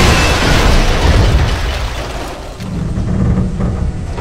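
An explosion sound effect: a loud sudden blast at the start that dies away over about two seconds, with music underneath.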